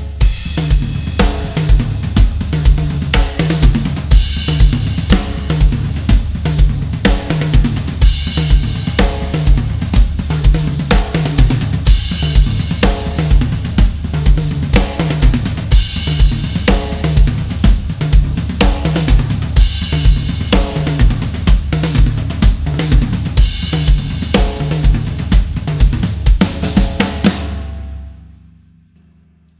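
Acoustic drum kit playing a tom-heavy groove at full tempo over a steady bass-drum pulse, with cymbal accents about every four seconds. It ends on a fill with floor tom and snare struck in unison, then stops just before the end and rings out.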